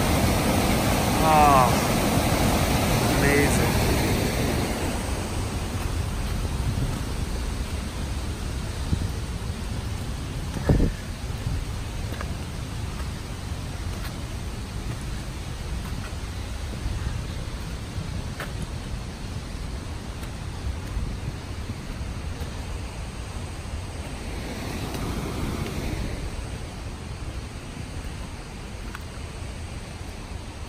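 Rushing white water of a mountain creek cascading over boulders: a steady roar that fades over the first several seconds to a lower, even rush. One sharp thump about eleven seconds in.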